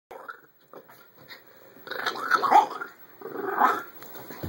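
Two small dogs play-fighting, growling and snarling at each other, with two loud bouts of growling in the second half.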